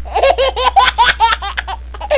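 A baby laughing hard: a quick run of high-pitched laughs, about five a second, that stops shortly before the end.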